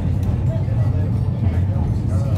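Wellington Cable Car funicular carriage running along its track, a steady low rumble heard from inside the cabin.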